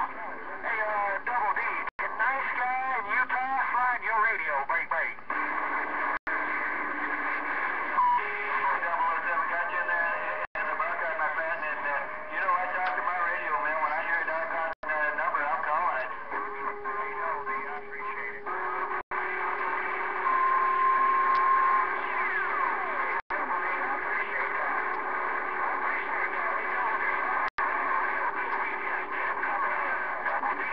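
Galaxy CB radio receiver playing a crowded band: several garbled, overlapping distant voices under static, with heterodyne whistles. A steady whistle comes in about halfway through and a second, higher one briefly near two-thirds. The audio drops out for an instant about every four seconds.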